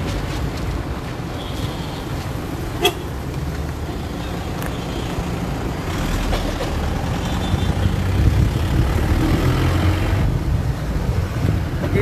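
Slow-moving cars, SUVs and vans driving past close by in a line, a steady engine and tyre rumble that grows louder in the second half as a van passes right alongside. There is one sharp click about three seconds in.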